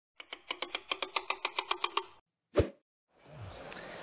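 Opening sound effect: a rapid, even run of about a dozen short pitched pops over two seconds, then a single sharp hit about two and a half seconds in. Faint hall ambience fades in near the end.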